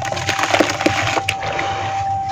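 Wet red dirt being crumbled and squeezed by hand into a bucket of water: a dense, irregular crackle of crumbling soil and small splashes.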